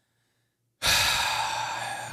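A man's heavy sigh, a long breathy exhale into a close microphone, starting a little under a second in and lasting over a second.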